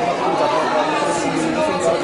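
Speech only: people talking, with voices running together as chatter.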